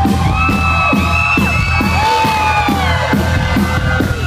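Live rock band playing loud, recorded from the audience: a steady drum beat under long held lead lines that bend up and down in pitch.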